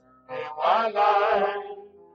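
A solo voice singing one long phrase with a wavering vibrato, swelling about half a second in and fading near the end.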